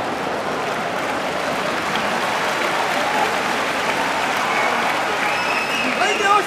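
Large sumo arena crowd applauding steadily, with voices in the crowd mixed in with the clapping.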